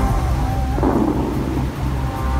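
The Dubai Fountain's water jets shooting up and their spray crashing back into the lake: a loud, deep, steady rumble with a rushing wash of water.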